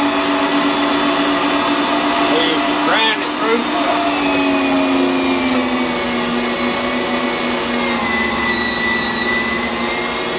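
Electric meat grinder motor running with a steady, noisy hum as chunks of wild hog meat go through it. Its pitch sags slightly about halfway through as the motor slows.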